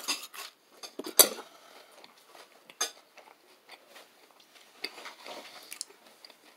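A fork clinking against a plate while eating: one sharp clink about a second in, a lighter one near three seconds, and small scattered ticks in between.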